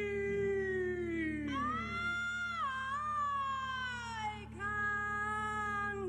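A man's voice wailing long, sliding notes in a cat-like yowl: a held note that slides down in the first two seconds, then a much higher note that bends and falls slowly, then another held note, over a steady low hum.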